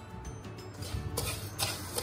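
Granulated sugar pouring off a plate into a nonstick wok, a gritty hiss that starts about a second in, over background music.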